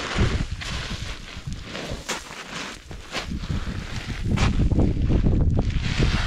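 Footsteps crunching and sliding in loose volcanic scree and gravel on a steep climb, each foot slipping back as the other goes down. Wind rumbles on the microphone and grows louder in the last couple of seconds.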